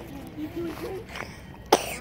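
A person's single short, sharp burst of breath near the end, with faint voices in the background.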